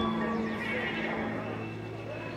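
Closing sounds of a live band song: a low note is held steadily while a wavering high sound slides downward over it, the whole easing off slightly.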